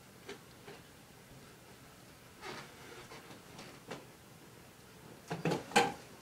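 A few faint knocks and clicks, then a quick run of louder clacks near the end.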